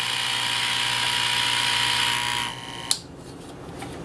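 Comgrow Z1 air assist pump running with a steady hum and hiss. The sound falls away about two and a half seconds in, followed by a single click.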